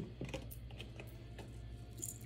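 Faint handling noise: a few soft, scattered clicks over a low, steady hum.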